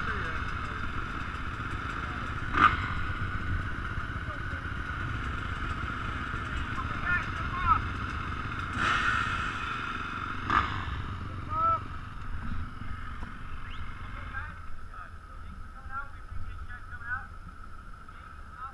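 A line of dirt bikes running at idle, a steady mechanical hum with wind rumbling on the helmet microphone, and a sharp knock a few seconds in and another about halfway through.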